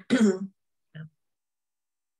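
A person clearing their throat, lasting about half a second, followed by a brief second small sound about a second in.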